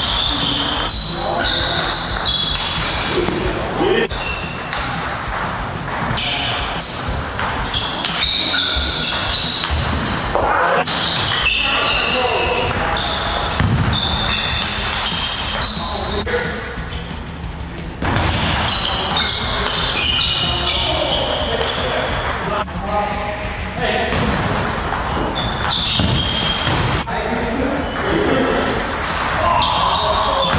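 Table tennis rallies: the plastic ball clicking off the bats and the table again and again, with the strikes echoing in a large hall, over music and voices.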